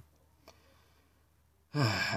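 A pause of near silence in a man's spoken monologue, with one faint tick about half a second in; he starts speaking again near the end.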